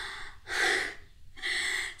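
A woman laughing silently in three breathy, unvoiced bursts of exhaled air.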